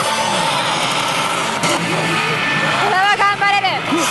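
Loud, steady pachinko-hall din from many pachislot machines playing electronic music and sound effects at once. About three seconds in, a machine gives a short, bending, voice-like call.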